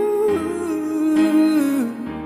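Male voice singing a wordless, drawn-out phrase over piano accompaniment, holding long notes that step down in pitch and stopping near the end.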